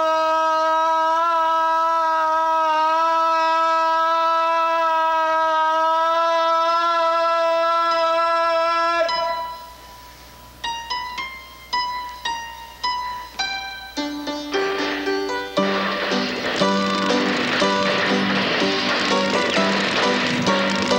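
A man's long held shout that swoops up into one steady high note and holds it for about nine seconds, then breaks off. Then piano notes are struck one at a time and build into fuller, louder music near the end.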